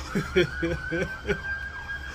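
Police siren wailing in one slow rise that holds its pitch and starts to fall near the end.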